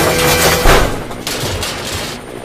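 A loud crash with a deep boom about two-thirds of a second in, fading away over the following second: a toy diesel engine dropping and smashing onto toy track.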